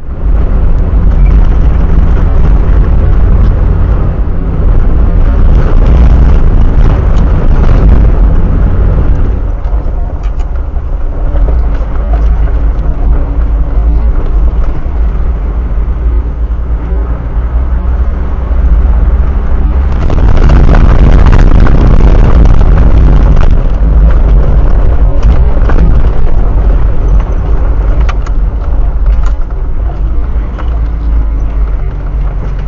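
A 4WD's engine and tyres on a rough gravel track, heard from inside the cabin through a dashcam microphone. It is a loud, deep rumble with frequent knocks and rattles, and it grows louder for a few seconds about two-thirds of the way through.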